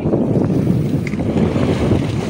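Wind buffeting the phone's microphone, with sea water washing and splashing against the hull beside the boat.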